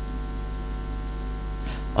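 Steady electrical mains hum, a low buzz made of many evenly spaced steady tones.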